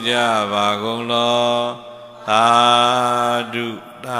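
A Buddhist monk chanting in a steady, sustained male voice through a handheld microphone: two long chanted phrases on fairly level pitch with a short breath between them about halfway through.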